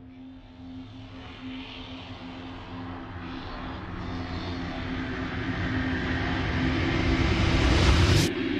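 Opening of a progressive trance track: a synthesized noise riser swells steadily louder over a held low synth note, peaking and cutting off sharply at the very end.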